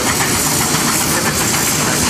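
Steam road locomotives working hard to haul a heavy trailer load, their exhausts chuffing amid a continuous hiss of steam.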